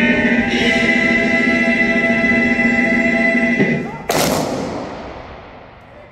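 Voices singing with instruments, holding a long sustained chord that ends a little over halfway through. About four seconds in comes a single sharp, loud bang that echoes away for over a second.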